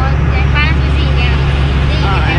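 Bus engine running with a steady low drone, heard from inside the moving bus, with voices briefly over it.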